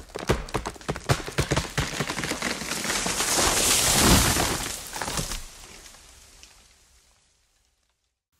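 Tree cracking and falling after a cannon shot: a dense run of cracks and snaps that swells to a crash about four seconds in, then dies away by about seven seconds.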